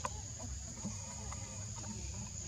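Steady high-pitched drone of insects, with a low rumble beneath and a few faint clicks and short chirps.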